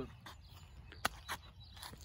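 Quiet outdoor background with a single sharp click about a second in.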